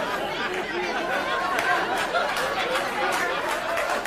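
Several people talking over one another in indistinct chatter, no single voice clear.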